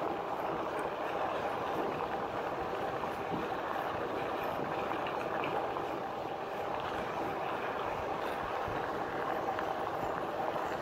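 Electric fat bike riding fast on a decomposed-granite dirt trail: a steady rolling noise from the tyres on grit, with a faint steady whine from the drive.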